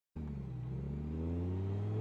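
Car engine accelerating, starting abruptly and rising steadily in pitch.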